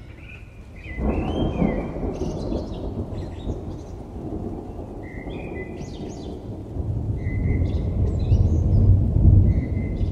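Birds chirping over a rushing noise that sets in suddenly about a second in, with a low rumble swelling near the end.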